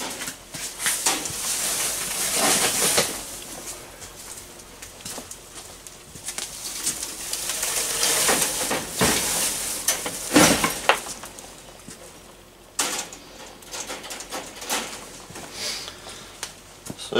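Hay rustling as it is pushed by hand into a wire rabbit cage, in irregular bursts, with a few knocks and rattles from the cage wire.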